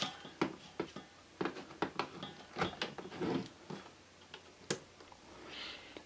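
Scattered light clicks and knocks, irregular and a fraction of a second apart, of a plug and its lead being handled and plugged in to power a breadboard circuit, with one sharper click about three-quarters of the way through.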